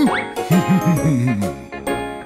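Bright children's cartoon music with tinkling chime notes, overlaid with comic sliding-pitch sound effects: a quick upward swoop at the start, then a run of short bouncy glides that ends in a longer falling one.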